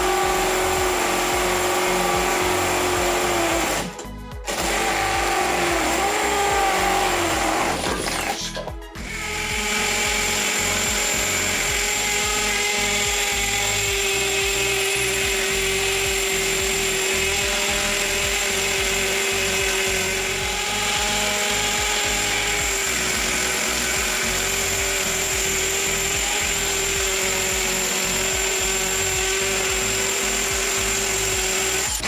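Cordless hammer drill running steadily with its hammer action on, boring into masonry (fired brick, then a masonry block). The sound breaks off briefly twice, about four and about nine seconds in.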